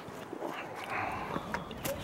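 Footsteps on a dirt forest trail with leaf litter, faint and irregular, with a sharp click near the end.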